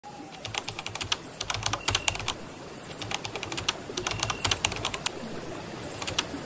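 Typing on keys: several quick bursts of key clicks with short pauses between them.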